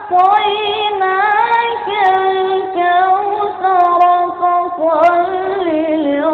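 A single high-pitched voice chanting a long melismatic line without clear words: held notes with wavering ornamental turns, in the style of melodic Quranic recitation, with a short breath near the start and another about a third of the way in.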